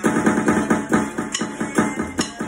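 Electronic dance track with drums played along on an electronic drum kit: quick, even hits about five a second.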